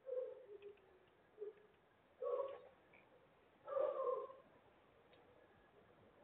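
A cat meowing three times, each call about half a second long, the first one falling in pitch.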